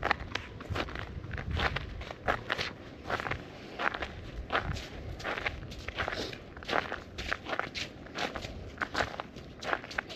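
Steady walking footsteps on a wet, snow-edged paved path, about two or three steps a second, over a low wind rumble on the microphone.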